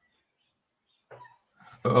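Dead silence from a muted call microphone for about a second, then a short faint vocal sound, and a man's voice starting to speak near the end.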